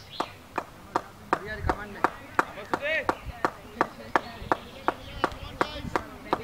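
A sharp click repeating evenly, about three times a second, with brief snatches of voices.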